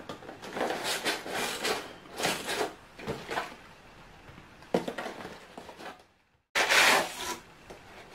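Cardboard shipping box being opened and its honeycomb kraft-paper wrapping pulled out: irregular bursts of rustling, scraping and crinkling of cardboard and paper, loudest near the end.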